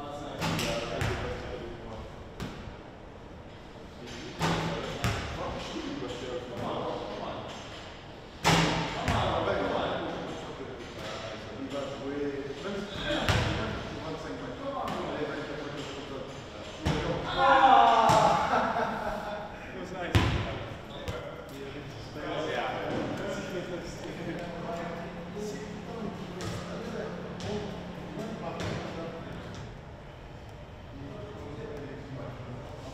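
A ball bouncing and striking hard surfaces in a large gym hall, a dozen or so separate thuds scattered irregularly, amid men's indistinct voices and short shouts, loudest a little past the middle.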